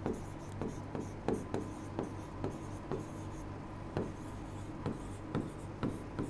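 A pen writing on a board: faint short taps and scrapes, about two a second, as the words are lettered out, over a faint steady hum.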